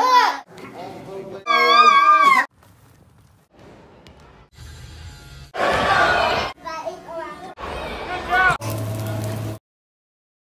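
Short snatches of people talking and calling out, children's voices among them, each about a second long and cut off suddenly, with short gaps between them.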